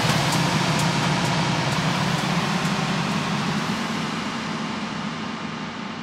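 Electronic dance music DJ mix in a transition from tech house to techno: a wash of white noise takes over the track. The hi-hat ticks thin out over the first two seconds, the bass drops away a little past halfway, and the whole mix slowly fades and darkens as its top end closes off.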